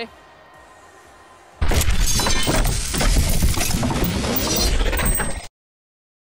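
Faint arena ambience, then about a second and a half in a loud logo sting: a dense, noisy sound effect with a faint rising sweep and music. It cuts off suddenly about five and a half seconds in.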